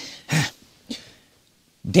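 A man briefly clears his throat once, with a soft breath just before it.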